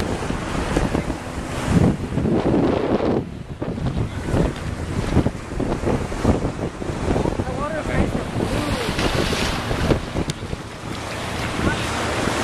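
Wind buffeting the microphone in uneven gusts over the steady wash of ocean surf.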